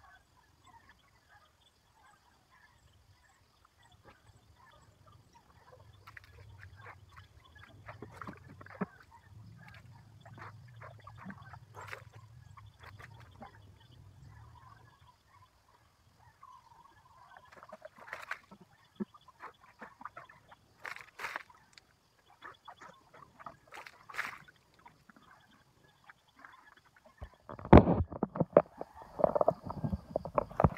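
Scattered splashes and spills of water as a person bathes with a bucket, over a faint low rumble that fades out about halfway. Loud knocks and rustling near the end as the phone recording it is picked up and handled.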